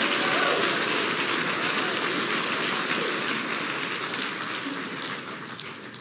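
Audience applauding, the clapping steadily fading away.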